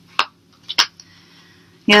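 A few short clicks of tarot cards being drawn from the deck and handled, then a woman's voice starting near the end.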